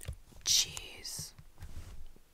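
A woman whispering right at the microphone, in two short breathy bursts about half a second and a second in.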